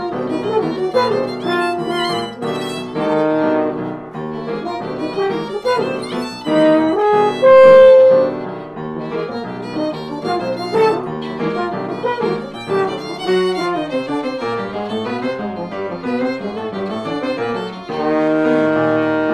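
Live jazz violin playing a busy line of many short bowed notes over piano accompaniment, with one loud held note about halfway through.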